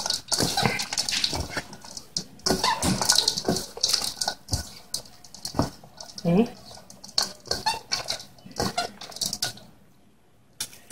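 Crunchy crackling and rustling as gloved hands toss and crumble crispy rice cracker into flaked fish in a stainless steel bowl, in quick irregular handfuls. The pieces crackle as they break, which is what gives the salad its crunch.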